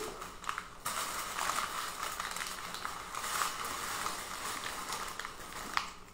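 Cellophane and paper wrapping rustling and crinkling as a wrapped bouquet is handled and turned, with a sharp click near the end.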